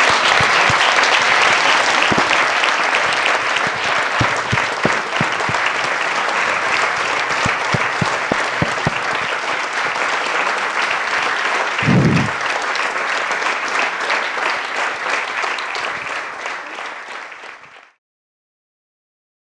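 Audience applauding, with the film crew on stage clapping along: steady, dense clapping that fades out near the end. A brief low thump sounds about twelve seconds in.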